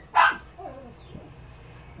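A dog barking once, short and sharp, just at the start, then quiet.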